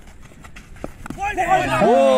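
A man's commentary voice: after about a second of quieter outdoor background with a faint knock, he starts speaking and draws out a long call that falls in pitch near the end.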